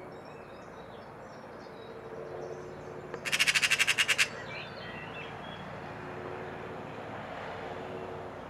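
Eurasian magpie giving its harsh rattling chatter, a rapid run of about a dozen loud calls lasting about a second, partway through. It is the chatter magpies use to mob a cat. Faint chirps of small birds sit in the background.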